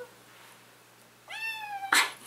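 A two-month-old kitten meowing once, about a second and a half in: a short call that rises and then slowly falls in pitch.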